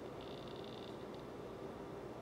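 Quiet room tone: a faint steady hiss with a low, even hum.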